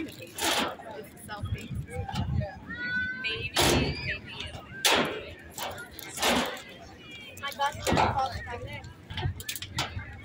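Voices of spectators outdoors, calling out at a distance, broken by several short loud rushes of noise.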